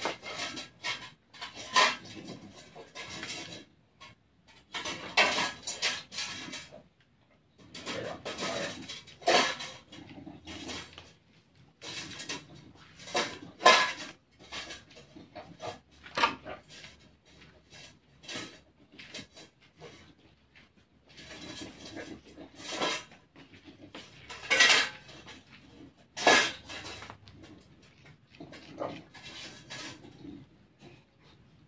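A block of cheese grated on a small metal hand grater: clusters of quick, sharp scraping strokes with short pauses between them.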